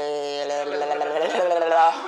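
A voice holding one long, hesitant "eh..." for nearly two seconds, the pitch wavering slightly near the end.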